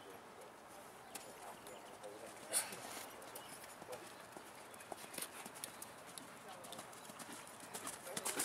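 Hoofbeats of a grey horse trotting and cantering on sand arena footing: irregular soft thuds, with one louder knock about two and a half seconds in.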